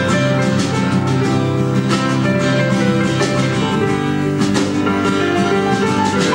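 Folk-rock band playing an instrumental passage live: acoustic guitars strummed and picked over a drum kit, with no singing.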